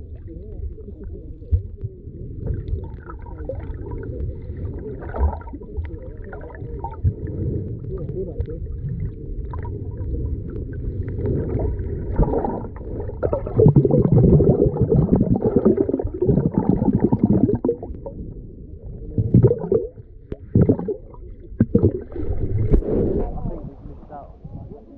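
Muffled underwater sound picked up by a waterproof camera held under a lake's surface: water moving and bubbling as a swimmer stirs the water close by, with muffled voices at times. It grows louder and busier about halfway through, then breaks up into short splashy bursts near the end as the camera nears the surface.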